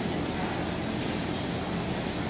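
Steady low rumble and hiss of background noise in a large hall, even throughout, with no distinct events.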